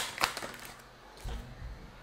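Tarot cards being handled on a desk: a few light card clicks in the first half second, then a soft low thump about a second and a quarter in.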